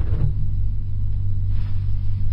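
A steady low rumble with a hum in it, in a pause in the talk.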